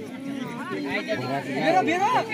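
Several voices of players and onlookers talking and calling out over one another, with more voices joining in near the end.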